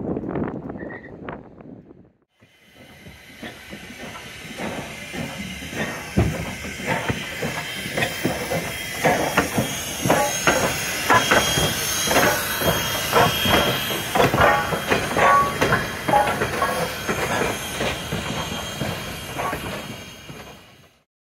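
Steam locomotive CN 89, a 2-6-0 Mogul, moving slowly during a run-around move. Steam hisses, and its exhaust chuffs come quicker and louder a few seconds after the sound begins.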